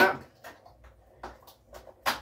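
A few faint taps and rustles of hands on a cardboard advent calendar box, spread over an otherwise quiet room.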